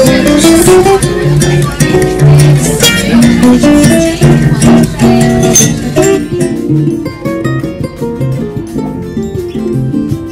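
Two acoustic guitars playing a lively duet of quick plucked notes. About six seconds in, the sound turns duller as its treble drops away, and the playing goes on.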